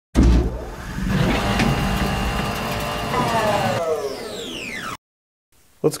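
A car engine starts suddenly and runs steadily, then falls in pitch over its last two seconds and cuts off abruptly about a second before the end.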